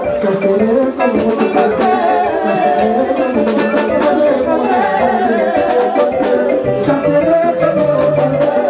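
Loud live band music with a man singing into a microphone over a steady drum beat.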